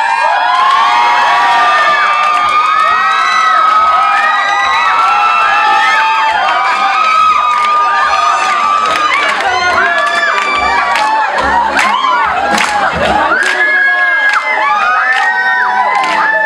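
A crowd of spectators cheering and shouting, many voices overlapping, with scattered hand claps; loud and sustained throughout.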